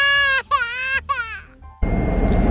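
Toddler crying: a held wail, then two shorter, wavering cries. Near the end, loud low car road noise cuts in.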